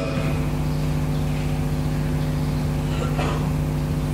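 A steady low hum with evenly spaced overtones over a background hiss, with a faint brief sound about three seconds in.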